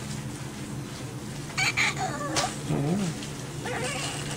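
A newborn baby gives a few short, squeaky whimpers about halfway through, over a steady low hum.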